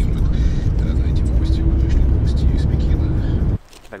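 Car cabin noise while driving: a loud, steady low rumble of the engine and tyres on a slushy road. It cuts off sharply near the end.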